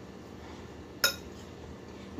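Utensil stirring broccoli slaw in a large bowl, with one sharp clink against the bowl about a second in.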